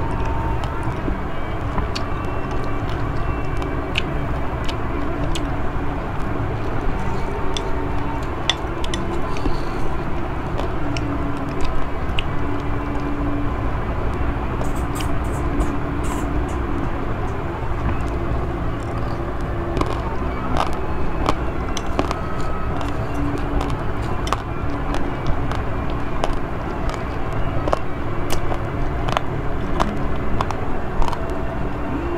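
Crunching clicks of uncooked basmati rice mixed with Milo powder being chewed, with a spoon clinking in a ceramic bowl around the middle, over a steady low rumble.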